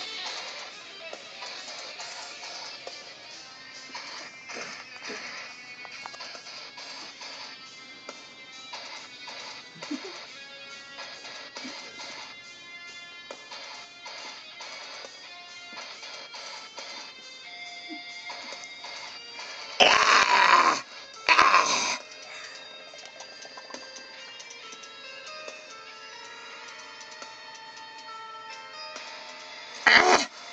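A band's newly recorded song playing back through the studio monitors from the recording software. Two short, much louder bursts break in about twenty seconds in.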